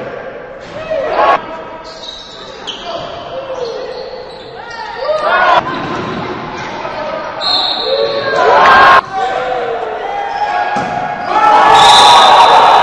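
Basketball game sounds echoing in a large gym: the ball bouncing on the court, sneakers squeaking, and voices of players and spectators.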